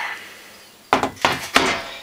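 Handling noise: two sharp knocks of hard objects against wood, about a second in and again half a second later.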